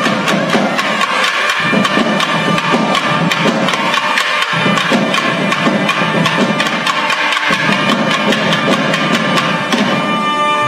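South Indian temple ensemble (periya melam): thavil drums played in rapid, dense strokes under the sustained melody of nadaswaram double-reed pipes.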